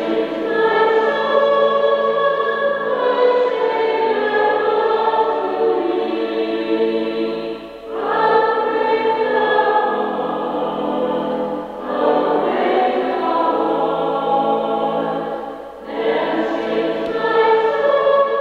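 Choir singing sacred music, in sustained phrases of about four seconds, each followed by a short pause.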